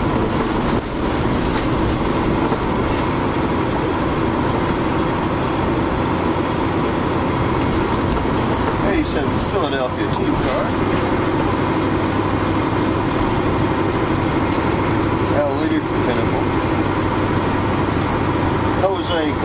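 Steady road and engine noise heard from inside a car's cabin as it moves through traffic.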